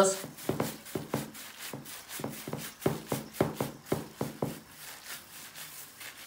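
A plastic-gloved hand pressing oiled spaghetti down into a glass baking dish: a run of soft, irregular taps and squelches, two or three a second, thinning out near the end.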